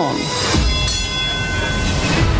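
Rhythmic mechanical clatter of a printing press running, under background music.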